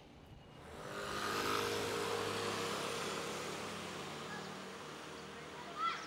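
A motor vehicle passing along the street: its engine and tyre noise swells about a second in, then slowly fades away. A short rising chirp is heard near the end.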